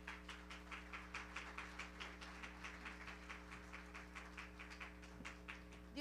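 Faint hand clapping from the congregation, a fairly even run of about five claps a second, over a steady electrical hum from the sound system.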